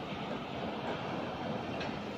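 Steady rushing noise of sea surf and wind along a rocky shoreline, with one faint click near the end.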